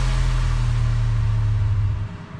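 Closing note of an electronic dance track: a held deep bass tone under a fading wash of noise. The bass cuts off near the end.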